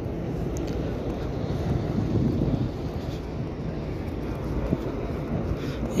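Steady outdoor street noise: a low rumble of bus traffic and crowds, with wind on the microphone.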